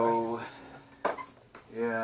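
A man's drawn-out "So", then a single sharp clink about a second in. Speech resumes near the end. No vacuum motor is running.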